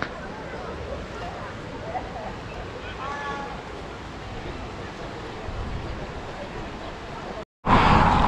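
Wind buffeting the microphone over a steady outdoor wash from a river running over rocks below, with faint, distant voices of people at the water. Near the end the sound cuts out briefly.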